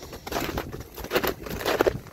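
Footsteps in snow: a hiker's boots crunching in an irregular series of steps.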